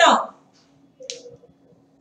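A woman's speech breaks off just after the start, followed by a pause holding one short click about a second in, over a faint steady hum.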